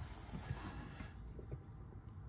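Quiet room tone: faint, steady low background noise, with no distinct sound standing out.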